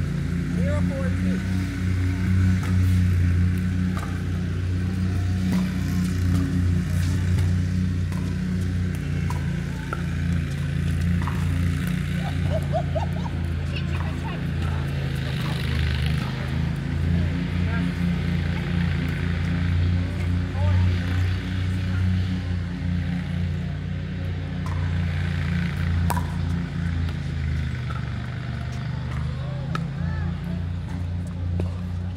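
Pickleball paddles hitting a plastic ball during a doubles rally, with scattered short sharp pops. These sound over a loud, steady low hum, with voices on and off.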